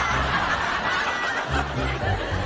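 Studio audience laughing in one long, continuous wave.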